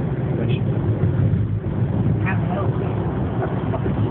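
Steady road and engine noise heard inside a car cruising at freeway speed: a constant low rumble, with faint voices briefly in the middle.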